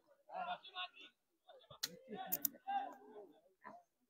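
Faint speech with a few sharp clicks about halfway through.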